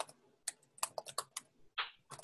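Typing on a computer keyboard: an irregular run of about eight quick key clicks.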